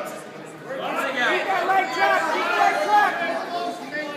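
Overlapping chatter of spectators' voices, softer at first and picking up under a second in.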